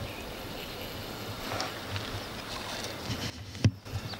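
Steady outdoor noise of lake water and wind, with a single short sharp knock about three and a half seconds in, inside a brief dip in the sound.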